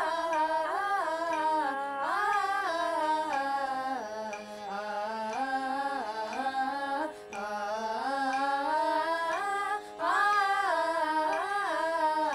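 Female voices singing a Carnatic vocal exercise together in akaram, holding the vowel 'aa' through the notes, moving stepwise in phrases with gliding ornaments. A steady drone sounds beneath, and the phrases break briefly about four and seven seconds in.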